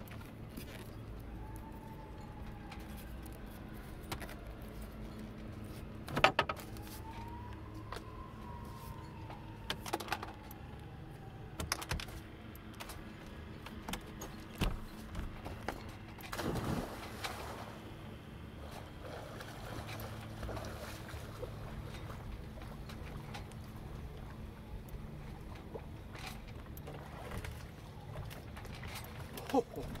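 A person diving headfirst into the water from a sailboat's bow, with a splash a little past halfway through. Before it come several sharp knocks and bumps, the loudest about a fifth of the way in, over a steady low rumble.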